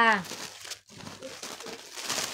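Clothes and their plastic wrapping rustling and crinkling as they are handled and sorted by hand.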